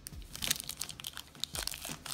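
Foil trading-card pack wrapper crinkling as it is picked up and handled, a run of short, crisp crackles.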